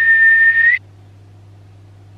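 A man whistling one held note that lifts slightly in pitch just before it stops, under a second in. After it, only a faint low hum.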